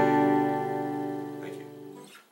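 Acoustic guitar chord ringing out after a single strum, slowly fading away.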